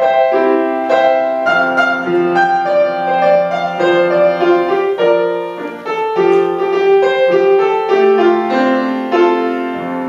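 Grand piano playing the introduction to a song's accompaniment: a melody over held chords, with no voice yet.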